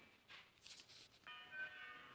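Near silence with faint background music: a few soft held tones come in about halfway through.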